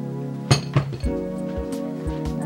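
Soft background music with two short clinks about halfway through, as of tableware or a hard object being set down on a desk.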